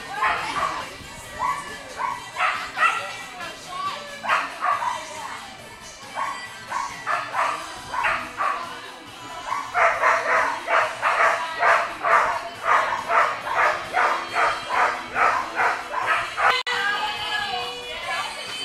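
Dogs barking repeatedly while held at flyball lane starts, with a dense run of rapid barks, about three a second, in the second half; the barking is the dogs' excitement before being released to run.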